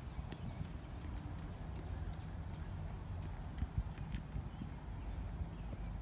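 Light, regular clicking steps, about two a second, over a steady low rumble.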